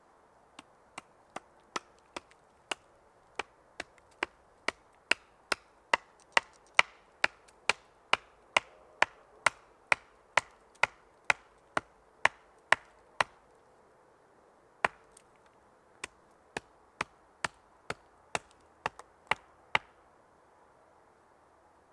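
Hatchet chopping at a wooden stake, sharp blows about two a second that grow harder over the first few seconds. The chopping stops for a moment after the middle, with one lone blow, then picks up again until the end.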